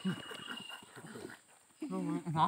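Low, indistinct voices, then a brief lull; near the end a voice starts a loud, drawn-out, wavering call.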